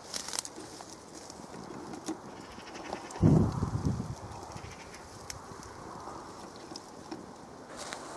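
Faint rustling of tall plant stems and dry seed heads as the camera moves through them, with one short, loud low sound about three seconds in.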